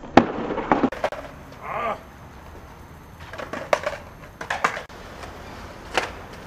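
Skateboard deck and wheels cracking down onto concrete after a flip-trick attempt: one sharp clack, then clattering as the board bounces and rolls. More sharp board clacks follow a few seconds later.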